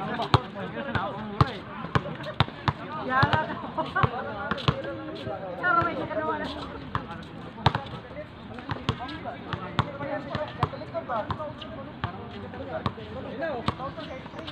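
A basketball bouncing on an outdoor concrete court, sharp irregular bounces all through, with players' voices calling out now and then.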